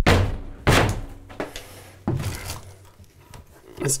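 A foot kicking moldy drywall off the bottom of a wood-stud wall: heavy thuds at the start and under a second in, then a lighter knock about two seconds in.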